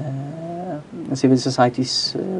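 Speech: a man talking, starting with a long drawn-out vowel and then going on in quick syllables.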